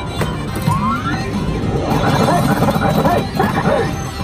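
Pinball machine playing its electronic music and sound effects, with a rising tone about a second in, over general arcade noise.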